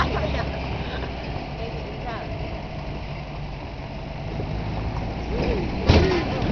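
A truck's engine runs with a steady low hum, mixed with road noise, as it drives along a rough dirt track. There is a sharp knock near the end.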